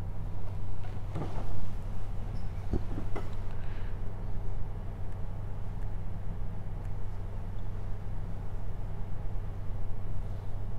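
Steady low hum of room background noise, with a few faint clicks in the first few seconds.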